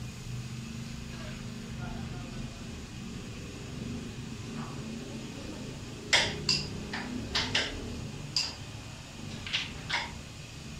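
Carrom shot: a sharp click about six seconds in as the striker hits a coin, followed by several lighter clicks of the striker and coins knocking together and against the wooden rails. A low murmur of the room runs underneath.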